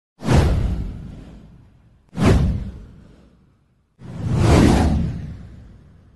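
Three whoosh sound effects about two seconds apart. The first two hit suddenly and fade away over a second or so; the third swells in more gradually before fading.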